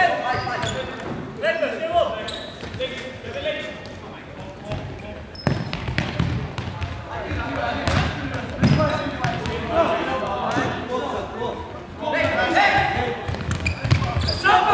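Futsal game in a sports hall: players' shouts and calls ring through the hall, mixed with the ball being kicked and bouncing on the wooden floor. The voices are loudest near the start and again near the end.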